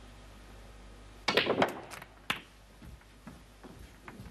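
Snooker balls on a match table: a cluster of sharp clicks a little over a second in, as the cue strikes the cue ball and the cue ball hits the black, which is potted. Another sharp click comes about a second later, then a few softer knocks.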